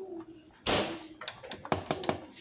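Silicone spatula working ketchup glaze in a metal loaf pan: a sudden scrape or knock about half a second in, then a quick run of short clicks and taps.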